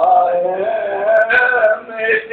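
A man singing a devotional song in Urdu, holding long melodic notes that waver slightly in pitch, with a brief break near the end.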